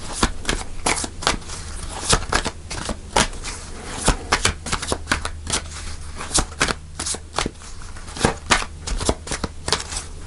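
A deck of tarot cards being shuffled by hand: a quick, irregular run of sharp card clicks, several a second, with a steady low hum underneath.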